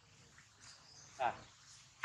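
Crickets chirring steadily and faintly, with one short, loud cry a little over a second in.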